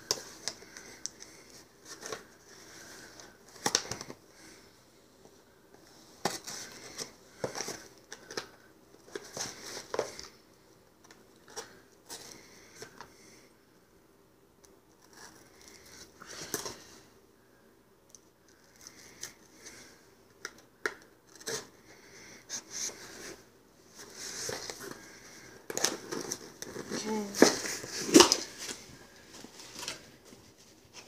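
Small cardboard shipping box being cut open and unpacked by hand: scattered scrapes and clicks as the packing tape is slit and the box is turned and handled. A denser stretch of cardboard and paper rustling and crinkling comes near the end as the flaps are opened.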